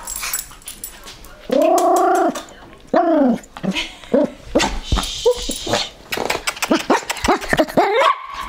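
Small dog vocalising: a long rising-and-falling call about a second and a half in, a shorter one soon after, then a quick run of short yaps.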